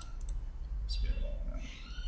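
Two quick computer mouse clicks about a quarter second in, over a low room hum and faint murmuring voices.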